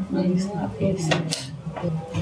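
A quiet voice murmuring, with two sharp, light clinks a little after a second in.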